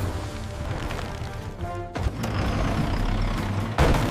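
Cartoon background music over a low engine rumble. About halfway through it gives way to a heavier rumble of a bulldozer pushing against a block wall, with a sharp crash near the end.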